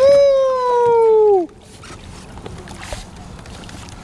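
A man's long, loud celebratory yell, held about a second and a half with its pitch sagging slowly before it breaks off, as a steelhead is scooped into the landing net. After it, only faint water and wind noise.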